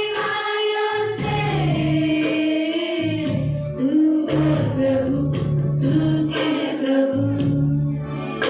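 A group of voices singing a Christian worship song together over instrumental backing, with a low bass line and a steady percussive beat.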